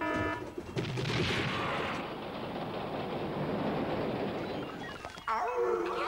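Cartoon sound effects: a few quick electronic beeps from a ride control panel, then a loud rushing, rattling noise for about four seconds as the fairground ride car is sent off. A cartoon voice laughs near the end.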